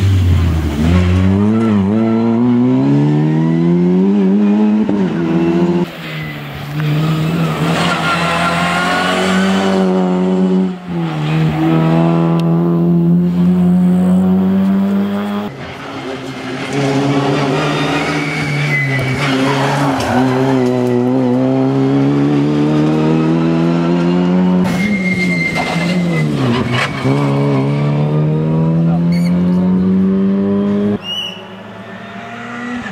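Opel Adam Cup rally car's four-cylinder engine revving hard, its pitch climbing through each gear and dropping at the shifts and lifts, over several passes cut one after another.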